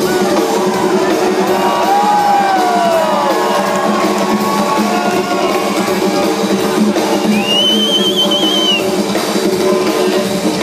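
Rock band playing live: drums and electric guitars, heard from the crowd in a concert hall. A high wavering note sounds over the band about eight seconds in.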